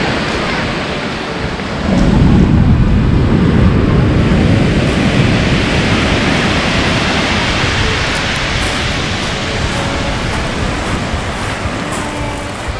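Pacific surf on a pebble beach. A wave breaks about two seconds in with a deep rush, followed by a long, steady wash of water over the stones.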